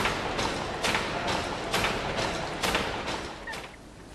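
Bancroft Mill's horizontal cross-compound steam mill engine running, with an even mechanical beat about twice a second, every other beat stronger. The beat fades out near the end.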